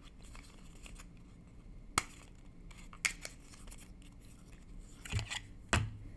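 A few sharp little clicks, the loudest about two seconds in, with two soft knocks near the end: a liquid eyeshadow tube and its cap being handled.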